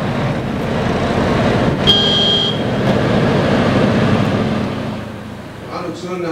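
Road traffic: a large truck and cars passing close by, the noise swelling and then fading away near the end. A brief high-pitched tone sounds about two seconds in.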